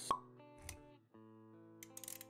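Intro jingle of an animated logo: a sharp pop sound effect at the start, a short low thud a moment later, then held music notes with a few light clicks near the end.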